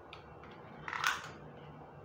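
Hands handling a plastic router: a few faint clicks and one short scrape about a second in.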